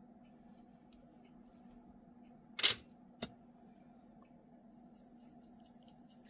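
Two sharp taps of a paintbrush against a ceramic palette during paint mixing: a loud one about two and a half seconds in and a fainter one half a second later, over a faint steady hum.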